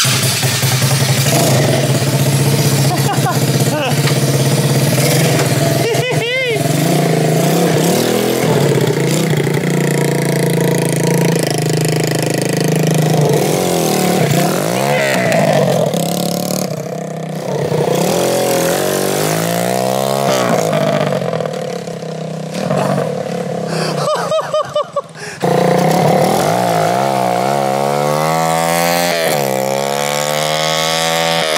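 Small 125cc four-stroke engine of a drift kart being ridden, revving up and down over and over. Its pitch climbs in repeated rising sweeps as it runs through the gears of its manual four-speed box.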